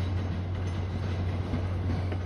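MBTA commuter rail train passing close by, led by its cab car with the diesel locomotive pushing at the rear: a steady low drone over the rolling rumble of steel wheels on the rails.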